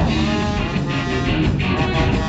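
A live rock band playing: electric guitar, bass guitar and drums together in a loud, steady instrumental passage.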